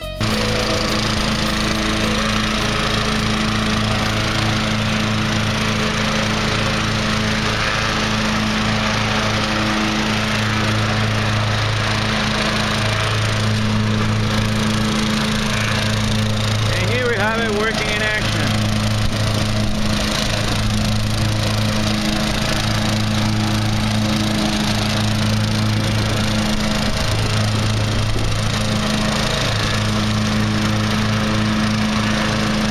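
Riding lawn tractor engine running steadily with the mower blades engaged, the deck drawing leaves up through a corrugated hose into a homemade leaf vacuum container, with a constant rushing and rattling of leaves.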